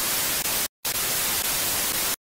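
TV static sound effect: a steady, even white-noise hiss that starts abruptly, drops out briefly about two-thirds of a second in, and then resumes.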